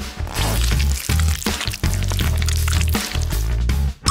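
Background music over wet squelching and dripping from a plastic squeeze bottle of ketchup being squirted out.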